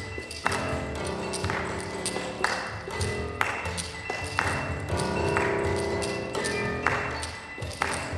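Live contemporary chamber music for strings, piano and clarinet. Sharp accented attacks come about once a second, each leaving a sustained chord, with small tapping clicks scattered between them.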